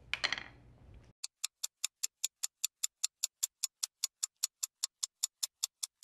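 Clock-ticking sound effect: fast, even ticks, about five a second, starting about a second in. It marks time passing.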